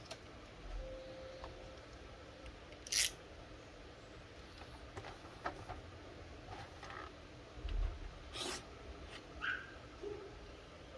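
A cardboard box handled and turned over in the hands: scattered light taps and rubs against the card, the loudest a sharp scrape about three seconds in and another past eight seconds.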